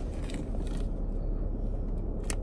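Steady low rumble inside a car cabin, with a few faint crackles from a foil snack bag being handled in the first second.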